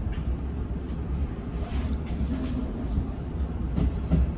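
Tobu 10000 series electric train running slowly, heard from inside the driver's cab: a steady low rumble with a few light clicks and a sharper knock near the end.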